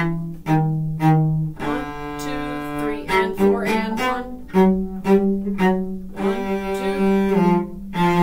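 Solo cello bowed in a march, playing a line of separate detached notes, mostly short with a few held longer, and a quicker run of notes a few seconds in.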